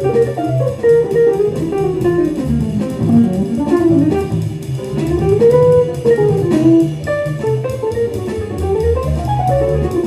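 Les Paul-style solid-body electric guitar playing a fast single-note jazz solo line in quick runs that climb and fall, with a bass part underneath.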